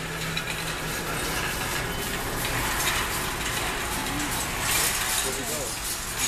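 Big-box store background noise: a steady hiss with faint, indistinct voices.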